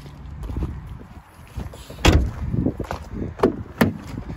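Vauxhall Insignia tailgate shutting with a heavy thump about two seconds in, then sharp clicks near the end as a rear door handle and latch are opened.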